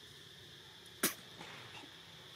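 A single sharp click or snap about halfway through, over a steady faint high-pitched hum, with a few much fainter ticks after it.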